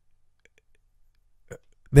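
A near-silent pause in speech, with a short faint click about one and a half seconds in, before a man's voice resumes at the very end.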